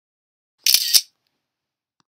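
Single-lens reflex camera shutter firing once: a quick double snap under half a second long, about three-quarters of a second in.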